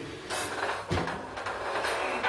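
Acoustic guitar being strummed as playing begins, with a sharp knock about a second in and strings ringing towards the end.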